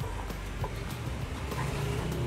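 Road traffic passing the stall: a low, steady engine hum that grows a little louder near the end as a vehicle comes closer.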